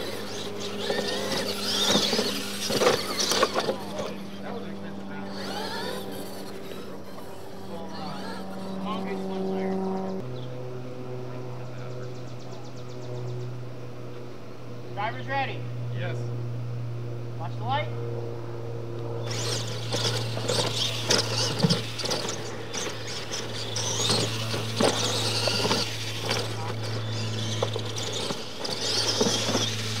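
Radio-controlled monster trucks driving hard on a loose dirt track, their tyres scrabbling and motors running, busiest in the first few seconds and again from about two-thirds of the way in. A steady low hum runs underneath.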